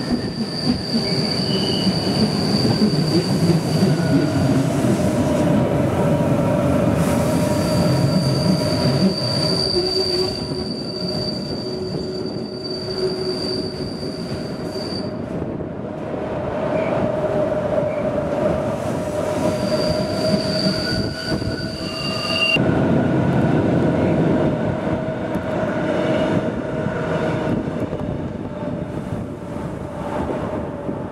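Rhaetian Railway Bernina line train running through a tight curve, heard from an open window: the steel wheels squeal in high, steady whistling tones that come and go several times, over the constant rumble of the running gear.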